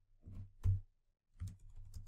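A few separate keystrokes on a computer keyboard, with a short pause in the middle.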